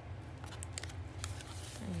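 Scissors cutting through cardboard: a few sharp snips and crunches as the blades close on the card.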